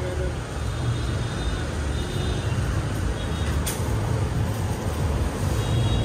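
Steady rumble of road traffic with indistinct voices in the background, and one brief click about three and a half seconds in.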